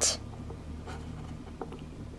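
Quiet pause with a low steady hum and faint scratchy handling noise, with a few light clicks, as the plastic toy figures are moved by hand.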